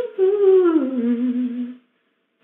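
A woman humming a tune to herself without words: a held note that slides down to a lower one, held until it stops near the end.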